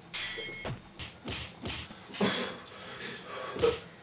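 Men gulping beer from a can and a bottle: several swallows in quick succession, about three a second, then a couple of short louder breaths or knocks.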